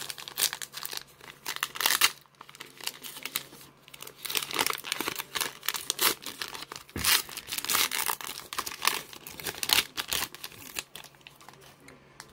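The plastic wrapper of a Panini Contenders Draft Picks football card pack being torn open by hand: irregular crinkling and ripping, loudest in a few sharp tears.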